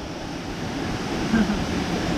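A waterfall and its pool of water running as a steady rushing noise, picked up by a GoPro's microphone.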